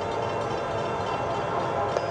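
Steady drone of an approaching Metrolink train led by Amtrak Dash 8 locomotive 503, with several faint held tones in it.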